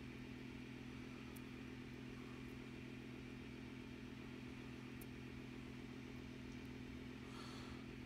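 A steady, quiet low hum, from a machine or electrical source in the room, with two faint ticks about a second and a half in and about five seconds in.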